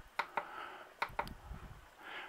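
About five short clicks of a finger pressing the buttons on an EPever Tracer solar charge controller's front panel, paging through its display.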